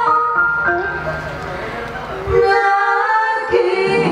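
Live band with electric guitars playing a slow melody of long held notes that step between pitches. The music thins out and drops quieter for about a second in the middle, then comes back louder.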